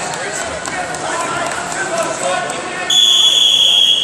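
Voices chattering in a large hall with scattered thuds, then about three seconds in a scoreboard buzzer sounds a loud, steady high tone for just over a second, marking the end of the wrestling bout.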